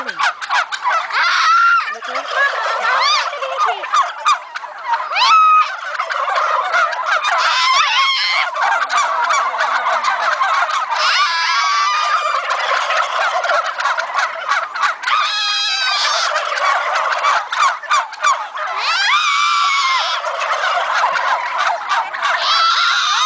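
A large flock of domestic turkeys gobbling together, a dense, continuous din of many birds at once. Louder waves of chorused gobbling swell up every few seconds as groups of birds answer one another.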